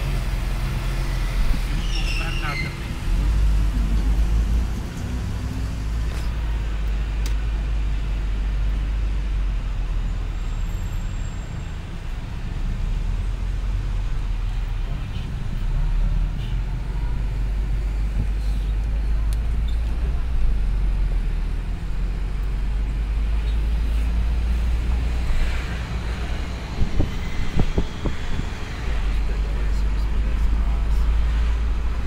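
Steady low engine and road rumble heard from inside a moving car in traffic.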